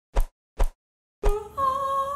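Two quick pops, then a woman singing one long held note that steps up once in pitch.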